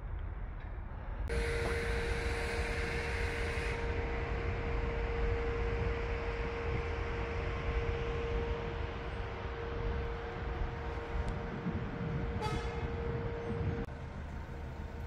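City-centre street traffic noise. About a second in it turns louder and a steady humming tone comes in and holds to the end.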